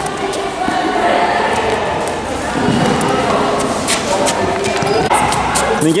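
Children's voices and chatter on a futsal court, with several sharp knocks of a futsal ball being kicked and bouncing on the concrete floor.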